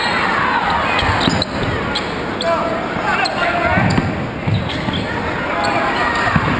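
A basketball dribbled on a hardwood gym floor, with sneakers squeaking, over crowd chatter and shouts that echo in a large gym.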